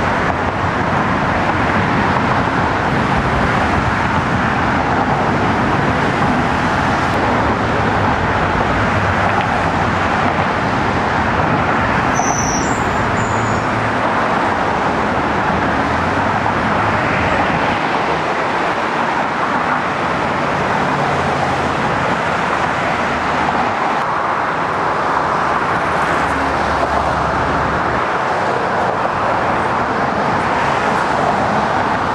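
Steady road-traffic noise from vehicles crossing the Brooklyn Bridge roadway, an even continuous rush with no breaks. There is a brief high squeak about twelve seconds in.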